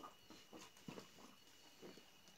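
Near silence: faint room tone with a thin steady high whine and a few soft, scattered clicks.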